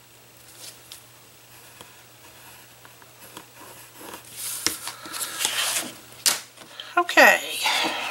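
Pencil drawing faintly along a clear ruler on a sheet of scrapbook paper, then the paper rustling and crackling loudly as the sheet is handled and lifted, with a short falling voice sound near the end.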